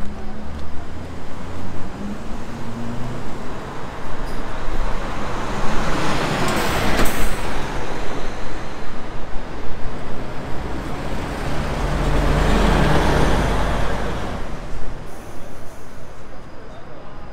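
Road traffic passing close by on a city street: one vehicle's tyre and engine noise swells and fades about seven seconds in. A second, heavier pass with a deep rumble follows a few seconds later.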